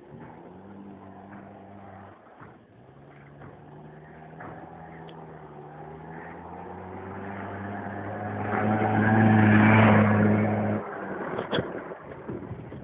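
A small motorbike engine running at a steady pitch, growing louder over several seconds as it approaches, loudest near the end, then its sound stops abruptly; a few sharp knocks follow.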